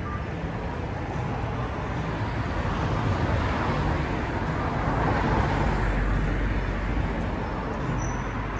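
Road traffic on a city street: a steady wash of car tyre and engine noise, swelling as a car passes close in the middle and easing off again.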